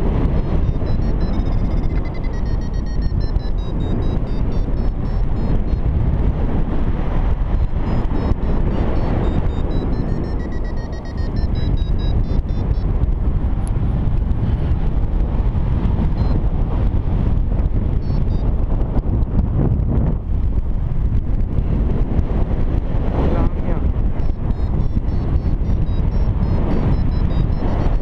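Wind rushing over the microphone in paraglider flight, loud and steady, with a paragliding variometer beeping faintly through it in quick runs that step up in pitch: the vario signalling a climb in a thermal.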